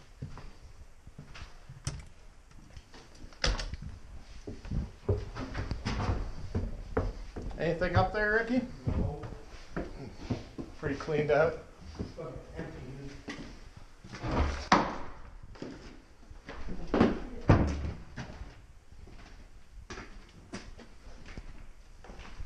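Scattered knocks and bumps of wooden doors and cupboards being handled in an empty house, the loudest few coming about two-thirds of the way through. A couple of short, untranscribed spoken bits come around the middle.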